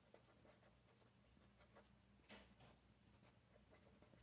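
Very faint felt-tip marker writing on paper: a string of short pen strokes, slightly louder a little past halfway.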